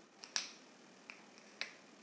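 Faint, sharp clicks, about five over two seconds, the loudest about a third of a second in.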